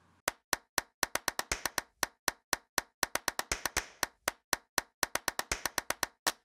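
A quick, uneven run of sharp, dry clicks, about five a second, with silence between them.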